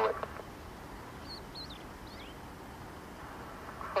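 A few faint, short, high bird chirps with quick rises and falls in pitch, between about one and two seconds in, over a steady background hiss.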